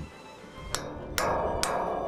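Hammer blows on an aluminium truss joint, driving in the connecting pins: several sharp metallic strikes about half a second apart, each with a short ring.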